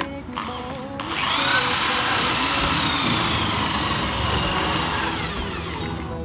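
Corded electric drill stirring a mix in a plastic bucket: the motor starts about a second in, runs steadily with a high whine for about four seconds, and winds down near the end.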